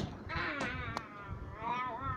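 Two drawn-out, high-pitched, meow-like calls, the pitch wavering through the first and bending upward in the second.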